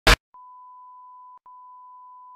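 A very short, loud burst of noise, then a steady high-pitched beep of the kind played under TV colour bars as a test tone: one beep of about a second, a brief break, and a second beep starting.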